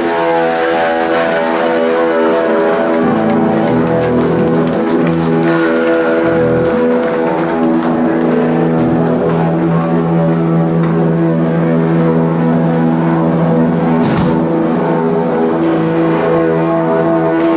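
Live punk band's electric guitars and bass sustaining a loud, droning chord with no steady drum beat.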